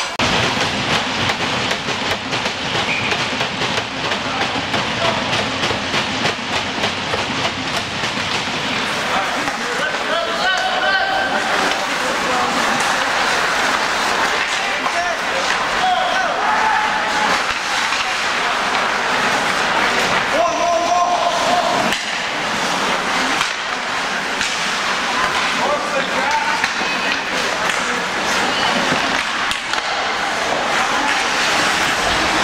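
Ice hockey game sounds in an indoor rink: skates scraping the ice and sticks and puck clacking, with indistinct voices calling out, loudest about ten seconds in and again about twenty seconds in.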